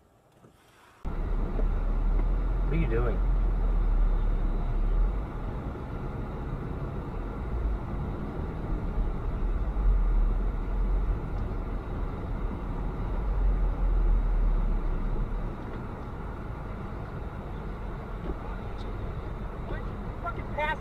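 Steady road and engine noise heard inside a moving car: a low rumble with a broad hiss. It starts suddenly about a second in after a moment of near silence, and the rumble eases a little near the end.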